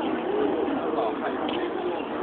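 A bird calling, with several short rising-and-falling notes in the first second, over a background of distant people's voices.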